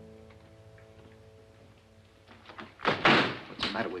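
Orchestral film score dying away, then a wooden door banging, with two sharp knocks close together about three seconds in. A man starts speaking just at the end.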